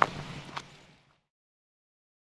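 A sharp knock, then a second, smaller one about half a second later over faint outdoor noise; about a second in the sound cuts off abruptly to dead silence as the camera is switched off.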